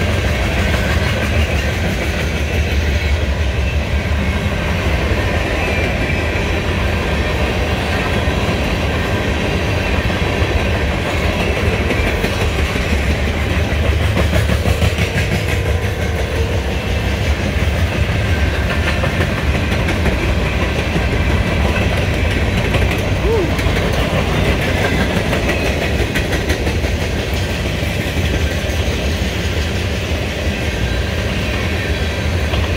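Freight train cars rolling past at speed: a steady rumble with the clatter of steel wheels over the rails.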